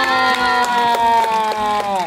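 A woman's voice holding one long drawn-out syllable, the end of a sing-song Thai greeting "นะคะ", its pitch sliding slowly down before it stops near the end.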